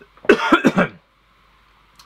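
A man coughing into his fist to clear his throat: a quick run of coughs lasting under a second.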